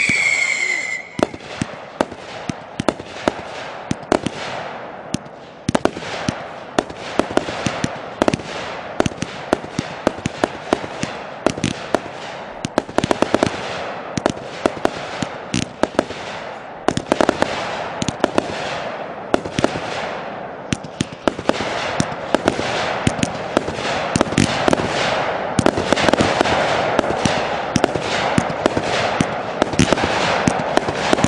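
Consumer aerial fireworks firing in rapid succession: a dense, continuous string of sharp bangs and pops with crackle between them. A high whistle from a whistling shot cuts off about a second in.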